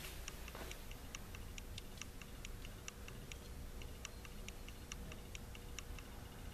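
Rapid, light, uneven ticking, about four ticks a second, over a faint steady hum.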